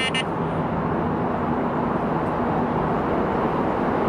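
Steady outdoor background noise, an even rumble and hiss with no distinct events, of the kind heard near traffic.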